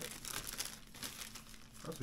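Thin clear plastic shaker bags crinkling with irregular crackles as they are handled and pulled open.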